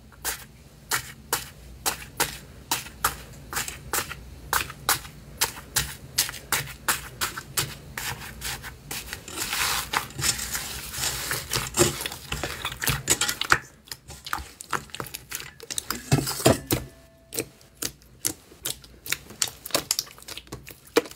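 Hands pressing and kneading a crunchy iceberg slime, its dried crust cracking in sharp clicks a couple of times a second, with a denser run of crackling about halfway through.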